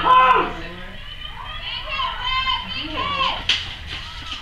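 Several high-pitched young female voices shouting and calling out, loudest at the very start and again through the middle, with a sharp crack about three and a half seconds in.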